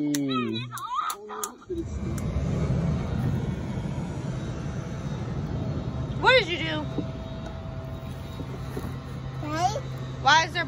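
A toddler's high squealing voice, then a steady low rumble with a constant hum that switches on about two seconds in and keeps going. A short high squeal rises over it about six seconds in.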